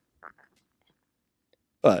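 A pause in conversation: a faint, short breathy vocal sound about a quarter second in, then near silence, then a man's voice saying "but" at the very end.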